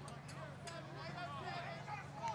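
Faint distant voices of players and onlookers calling out across the field, over a steady low hum, with a few light clicks.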